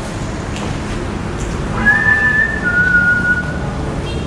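A whistle of two held notes: a high note about two seconds in that steps down to a slightly lower note and stops shortly before the end, over a steady background rumble.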